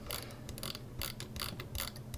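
A quick, irregular run of light clicks at the computer, about five a second, made by the presenter working the mouse and keyboard while navigating the page. A faint steady hum runs underneath.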